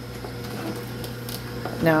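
Nama J2 slow (cold-press) juicer's motor running with a steady low hum as it starts on a hopper full of produce.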